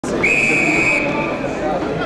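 Referee's whistle blown once in a single steady blast of under a second, over shouting and voices from players and spectators.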